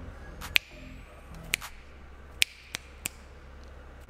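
Five sharp finger snaps at irregular spacing, over a faint low hum.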